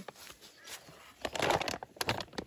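Leaves and twigs of a fruit-laden citrus tree rustling and crackling as branches are handled, with a louder rustle a little past halfway.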